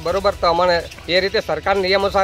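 A man speaking continuously, over a steady low hum.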